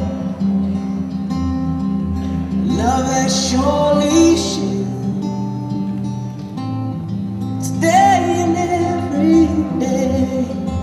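A song playing: a singing voice over a steady instrumental backing, the voice heard most clearly a few seconds in and again near the end.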